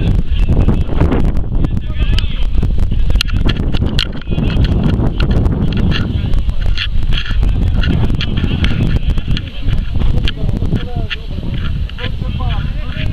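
Wind buffeting the microphone with a loud low rumble and frequent crackles, under indistinct raised voices of players and spectators at a football pitch.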